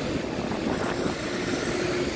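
Street traffic noise from passing vehicles, steady and even, with a faint steady hum joining about halfway through.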